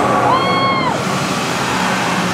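The fire-breathing effect of the Gringotts Bank dragon: a burst of flame heard as a steady rushing noise with a low rumble underneath. A person gives a short whoop about half a second in.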